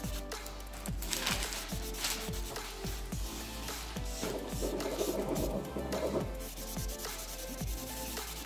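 A foam buffing block rubbing back and forth over a gel-polished nail in repeated strokes, roughing up and taking off the surface shine of the top coat. Background music with a steady beat plays underneath.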